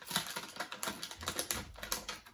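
Foil snack bag crinkling as a hand rummages in it: a rapid, irregular crackle.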